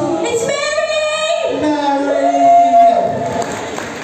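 Stage singers holding long sung notes through microphones with little or no backing, echoing in a large hall. The singing ends about three seconds in.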